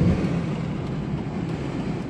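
Steady road and engine rumble heard from inside the cab of a moving Dodge.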